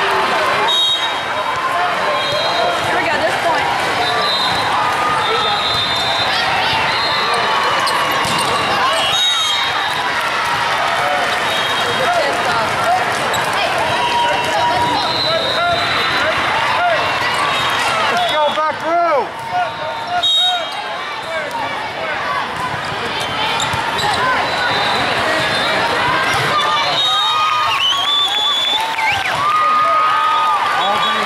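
Busy volleyball tournament hall: many voices of players and spectators talking and calling out, with volleyballs being hit and bouncing on the hardwood courts. Short, high referee whistle blasts sound several times.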